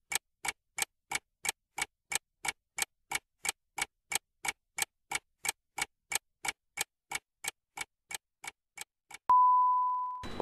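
Quiz countdown-timer sound effect: clock-like ticks, about three a second, growing fainter over the last second or so. About nine seconds in, as the countdown reaches zero, a single long steady beep sounds and slowly fades.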